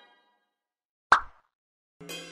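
A single short water-drop plop sound effect about a second in, matching a water-ripple animation.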